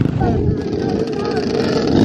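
Several motorcycle and ATV engines running together in a crowd of bikes, with people's voices mixed in.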